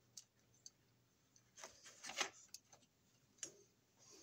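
Faint, scattered clicks and taps of hands handling a plastic thermostat base and its thin wire, with a small cluster of clicks about two seconds in.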